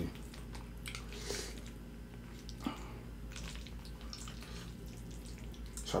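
Wet mouth sounds of someone chewing creamy fettuccine alfredo, with scattered soft smacks and small clicks, one a little sharper near the middle. A faint steady low hum runs underneath.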